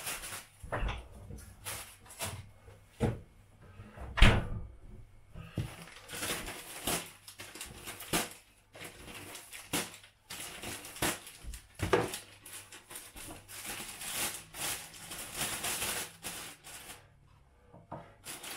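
Plastic bags being handled: irregular rustling and crinkling as bread slices are packed into a clear plastic bag, with a few sharper knocks on the counter, the loudest about four seconds in.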